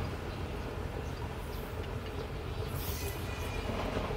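Steady low background rumble, with a brief faint high hiss about three seconds in.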